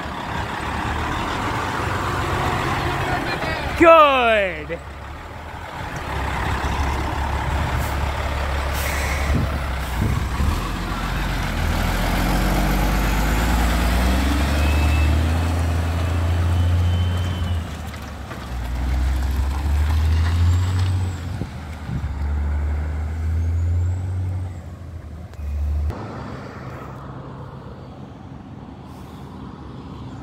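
Heavy diesel dump truck passing close by, its engine rumbling under load as it goes. About four seconds in there is a short, very loud tone that falls steeply in pitch over about a second.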